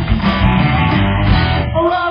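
Live rock band playing electric guitars and drums through a PA. The full band cuts out near the end, leaving a held pitched sound ringing.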